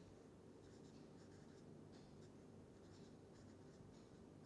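Faint scratching of a felt-tip marker writing on paper, a few short strokes over quiet room tone.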